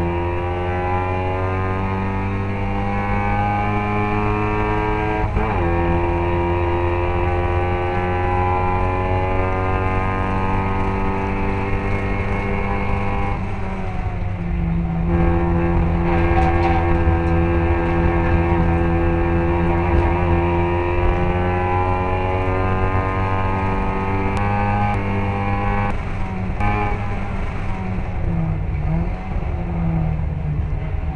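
Classic Mini race car's four-cylinder engine heard onboard, running hard at high revs. Its pitch climbs slowly, drops sharply about halfway through, and then breaks briefly several times near the end as the driver lifts off and changes gear.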